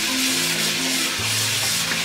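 Kitchen tap running steadily into a stainless steel bowl of cucumber pieces, water splashing over them as they are rinsed, with background music underneath.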